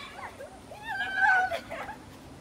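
Girls squealing and shrieking as they run, with a longer held high squeal a little over a second in.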